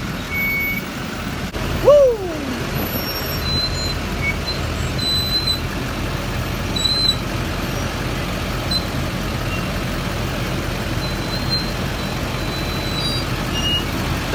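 Heavy diesel engines of a school bus and a tow truck running steadily at close range. About two seconds in there is a short whine that falls in pitch.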